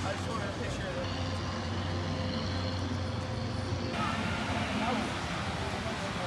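Outdoor crowd ambience: scattered voices of passers-by over a steady low mechanical hum. The background changes abruptly about four seconds in.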